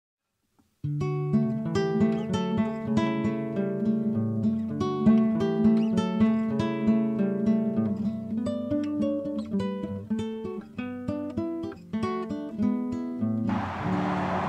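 Acoustic guitar music, plucked notes and chords, starting just under a second in and giving way to a steady hiss near the end.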